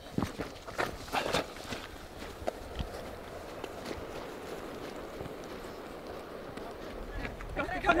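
Running footsteps of trail runners jogging past, a series of short footfalls in the first second or two, then a steady outdoor background hiss.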